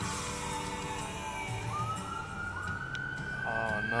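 Emergency vehicle siren in a slow wail, heard from inside a car: the tone slides down, then rises again about two seconds in and holds high.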